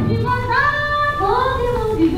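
Children singing a song over backing music, drawing out two long notes that slide up and then down.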